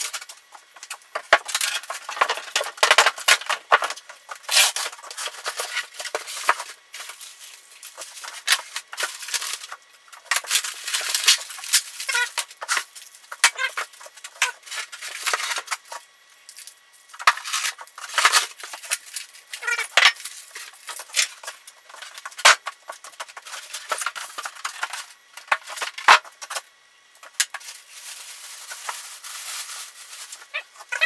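Unpacking noise from a mini milling machine's packaging: a wooden crate shell being lifted off, then styrofoam packing and plastic wrap being pulled away. It comes as an irregular run of crackling, scraping and knocks with short pauses between.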